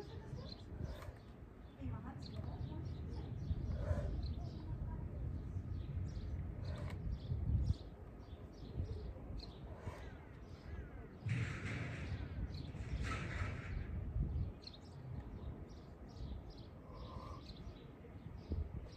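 Outdoor ambience: small birds chirping in short, frequent calls over a low, fluctuating wind rumble on the microphone, with two louder, harsher calls of about a second each near the middle.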